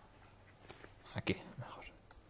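A person whispering faintly, with two sharp clicks just over a second in.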